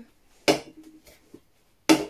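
Funko Soda figure cans being handled and set down on a tabletop: a short knock about half a second in and a louder, sharper knock near the end, with quiet in between.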